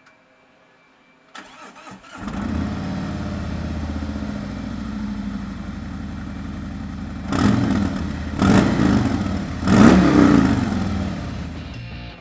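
2017 Harley-Davidson Road Glide Special's Milwaukee-Eight 107 V-twin being started: a brief crank about a second in, catching at about two seconds, then idling steadily. In the second half it is revved three times with short blips of the throttle before settling back.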